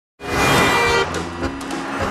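A vehicle horn sounds abruptly for just under a second, then traffic noise from a passing car carries on.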